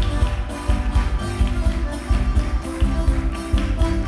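Live Chilean folk music from Patagonia played by a small band, with a steady beat, over dancers' feet tapping and stamping on the stage floor.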